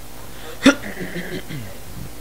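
A person's voice in a pause in the music: one short, sharp vocal sound about two-thirds of a second in, then fainter sounds falling in pitch.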